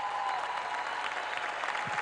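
A large audience applauding: dense, steady clapping from a full hall.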